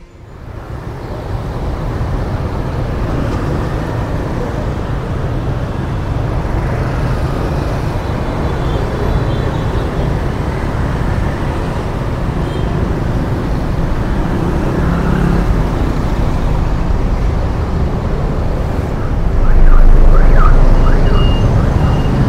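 Busy city street traffic, mostly motorbikes with some cars and a bus, heard from among the moving traffic as a steady low rumble. It fades in at the start and grows louder near the end.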